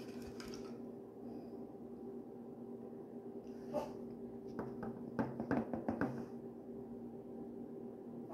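Quiet room with a steady low hum, and faint clicks and rustles of a hand-held mirror and makeup brush being handled, mostly about halfway through.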